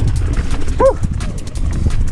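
Mountain bike rolling fast down a rough, leaf-covered dirt trail: a steady low rumble with constant rattling and knocking from the bike over the ground. Just under a second in, the rider gives one short "woo!" shout.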